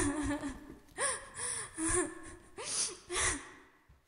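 Human crying: a string of breathy sobbing wails, each rising and falling in pitch over about half a second. They repeat about every half second to a second and stop abruptly at the end.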